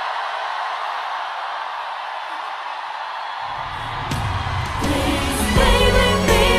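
A pop song: a thin passage without bass for about three and a half seconds, then the full band with bass and drum hits comes back in, and a voice sings near the end.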